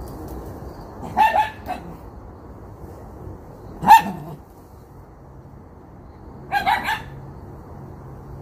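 Dog barking in short, high barks: a quick two or three barks about a second in, one loud single bark near the middle, and another quick run of barks near the end.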